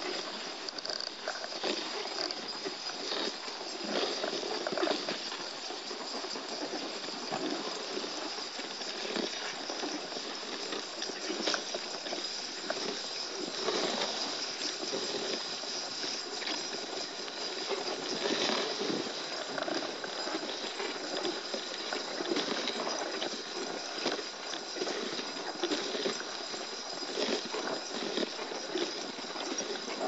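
A dog sled running behind its dog team on a snow trail: a steady hiss of the runners on snow, with many short knocks and rattles from the sled and the dogs' feet.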